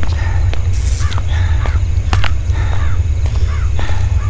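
Night ambience for an animation: a steady low rumble under several short, arching animal calls, like birds cawing, with a few sharp clicks among them.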